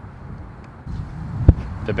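Low outdoor wind rumble on the microphone, then a single dull thump about a second and a half in, the loudest sound here.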